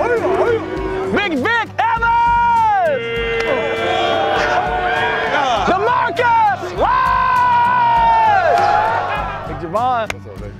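A group of football players yelling and whooping, with long drawn-out cheers that swell, hold and fall away, as a teammate dives into a tackling pad.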